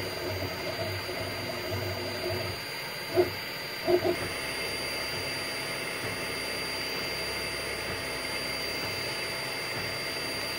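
FDM 3D printer at work: the print head's stepper motors hum in shifting pitched tones as they move, over a steady whir of cooling fans. Two short, louder blips come about three and four seconds in, after which the motor tones settle into a steadier pattern.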